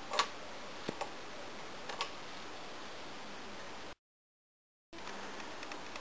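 Quiet steady hiss of room tone with three faint short clicks in the first two seconds, then about a second of dead silence where the recording cuts before the hiss returns.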